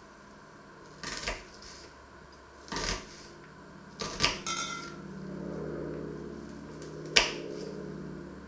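Small kitchen knife cutting an onion on a wooden chopping board: a few separate sharp knocks as the blade meets the board, the loudest near the end. A steady low hum comes in about halfway through.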